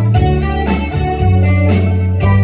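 Live country band playing an instrumental passage: guitars over a bass line and drums with a steady beat, with no vocal.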